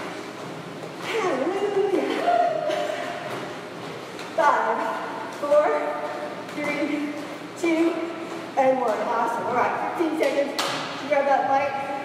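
Speech: a person talking, with the short, broken phrases of a voice.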